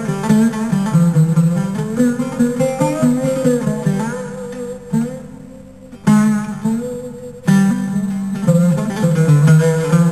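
Instrumental music on a plucked string instrument, guitar-like, playing a melody. Around the middle a chord fades away, then the playing starts again sharply.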